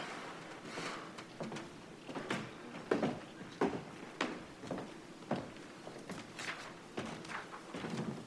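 Faint footsteps of people walking across the room, a soft irregular step roughly every half to one second.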